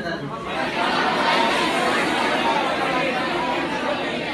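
Many students' voices calling out an answer together, an overlapping murmur of a class responding to a question.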